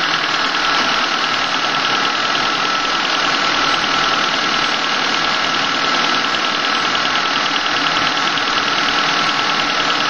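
1997 Honda Civic EX's four-cylinder engine idling steadily, heard close up in the engine bay, still warming up after a cold start from overnight. A thin steady whine runs over it.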